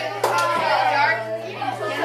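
Many children talking at once in a classroom, a babble of overlapping voices, over a steady low hum.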